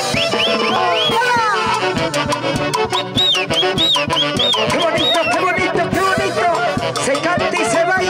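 Live band music in an instrumental passage: saxophones play a gliding melody over a steady drum-kit and percussion beat.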